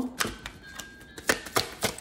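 A handful of light, sharp clicks and taps of tarot cards being handled on a table: one just after the start, then four in quick succession in the second second.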